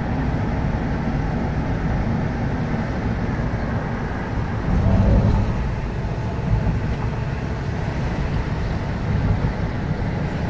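Steady road noise inside a moving car: engine and tyres rolling on a wet motorway, with a brief swell about five seconds in.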